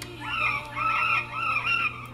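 Recorded parakeet call played back: a quick run of about six similar chirps, each rising and falling in pitch.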